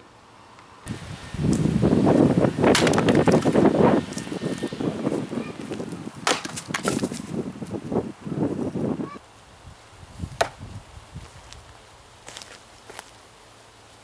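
Pulaski axe chopping firewood on a chopping block: a loud stretch of knocking and rustling in the first few seconds, then single sharp chops several seconds apart as rounds are split.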